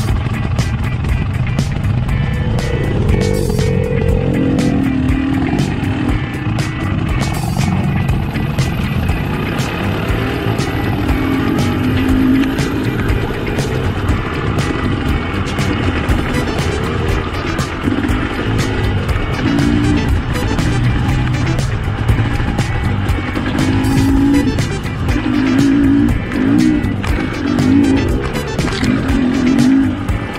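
Fuel-injected Husqvarna two-stroke dirt bike engine running under way on a trail ride, its pitch rising and falling as the throttle opens and closes, with wind buffeting and scattered clicks and knocks.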